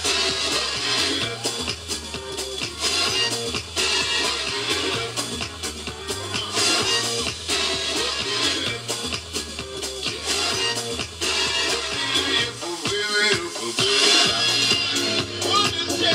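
Dance music with a steady beat playing over a stage sound system while a dance group performs.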